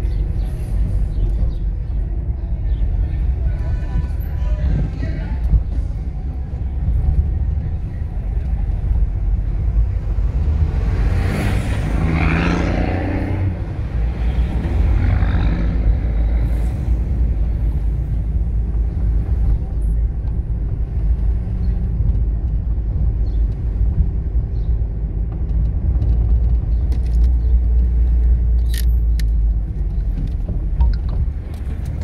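Car driving along a town street: a steady low engine and road rumble, with a louder passing swell about eleven to thirteen seconds in.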